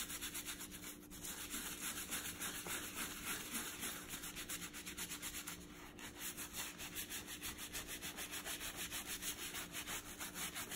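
A small bristle dauber brush scrubbing saddle-soap lather into a leather boot, in rapid back-and-forth strokes several a second. The scratchy strokes pause briefly about halfway through, then carry on.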